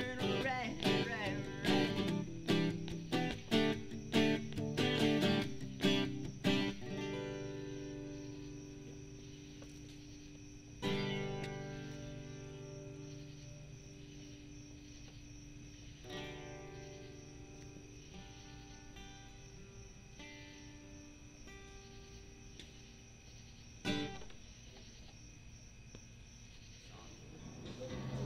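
Acoustic guitar strummed in a quick rhythm for about seven seconds, then a few single chords struck and left to ring out and fade.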